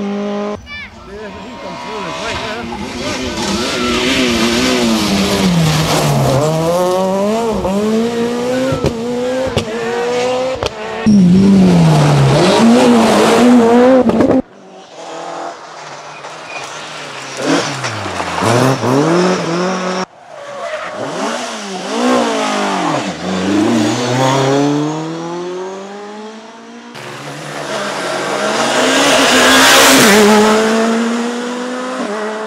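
Rally car engines at full throttle on a stage, several cars in turn. Each engine revs up and drops again through repeated gear changes as the car passes, and the sound cuts abruptly from one car to the next three times. The last car is a Škoda Fabia S2000 accelerating hard.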